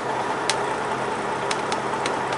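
A tractor-trailer's diesel engine idling steadily, heard from inside the cab, with a few faint clicks.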